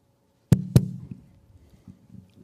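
Two sharp knocks close together, about a quarter second apart, loud and close to the microphone, each with a short dull tail, as if something struck or handled the microphone or the table it stands on.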